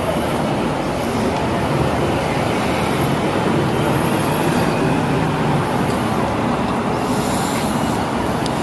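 Steady road traffic noise from a busy street.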